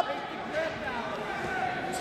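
Faint voices and the general murmur of people in a large hall, between loud shouts.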